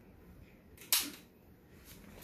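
One sharp, short click about a second in, over quiet room tone.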